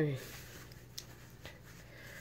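The end of a spoken word trailing off and falling in pitch, then quiet room tone with a couple of faint single clicks.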